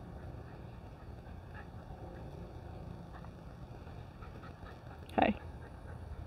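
Steady low rumble of wind buffeting the microphone, with one short spoken "hey" near the end.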